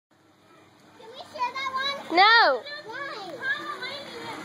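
Children's voices calling and shouting, with one loud, high-pitched squeal that rises and falls about two seconds in.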